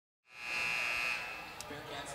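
Arena horn sounding one steady high tone for about a second over faint crowd noise, coming in after a brief gap of silence: the signal that a timeout is over.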